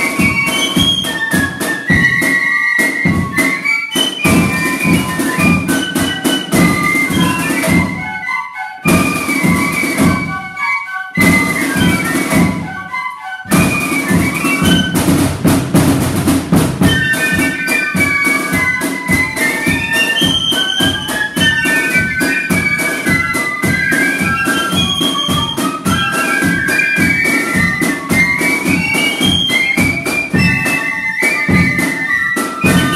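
Corps of drums playing a march: Bb flutes, F flutes and piccolo carry the melody in parts over snare drums and a bass drum. The drums drop out briefly a few times between about eight and fourteen seconds in, leaving the flutes alone.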